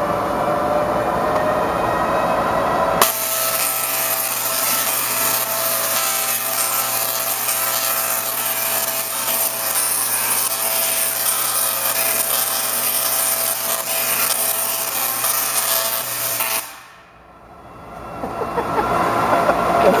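High-voltage arcs from a large Tesla coil striking a man's metal mesh Faraday suit: a loud, dense crackling buzz with a steady low hum under it. It starts abruptly about three seconds in and cuts off suddenly near the end.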